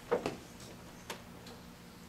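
Footsteps of a person in boots on a hard hall floor: a few soft taps at walking pace, the loudest pair just after the start and another about a second in, over a faint steady hum.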